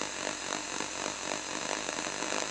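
Television static sound effect: an even, steady hiss of white noise.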